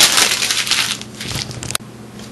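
Loud crackling rustle right at the camera's microphone for about a second, fading away, then a sharp click near the end: handling noise as someone moves up against the camera.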